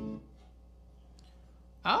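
Background music that cuts off just after the start, leaving a faint low hum, then a man's short "Oh" near the end.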